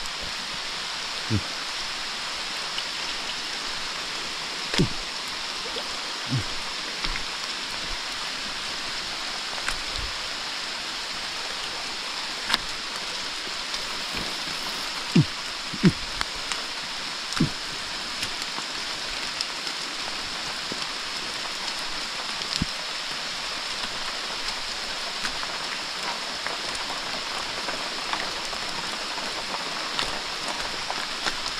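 Steady rain falling on wet boulders and leaves, an even hiss. A few scattered soft knocks come from footsteps in flip-flops on the wet rocks.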